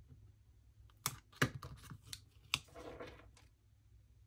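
Quiet handling of stickers on a paper planner page: a few sharp little clicks and taps, about one, one and a half, and two and a half seconds in, followed by a brief soft rustle of paper.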